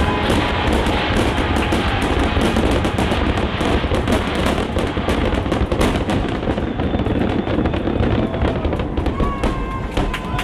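Fireworks going off: rapid, dense crackling from many small star bursts over a steady low rumble of explosions.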